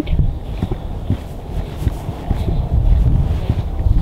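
Wind buffeting the camera's microphone outdoors, a steady low rumble with a few faint knocks.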